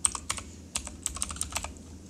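Computer keyboard typing: a quick run of key clicks as a word is typed.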